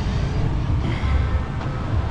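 Street traffic: motorcycles and a car passing on the road, under a steady low rumble.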